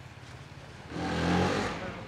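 Off-road dirt bike engine running low, then revved hard for about a second, starting about a second in, as the bike is wrestled up a rocky step.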